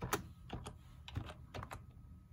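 Computer keyboard being typed on: a short, quiet run of key clicks, unevenly spaced.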